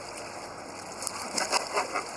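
Steady rush of river water around a boat, with a few soft knife cuts through fresh skipjack herring on a cutting board about a second in.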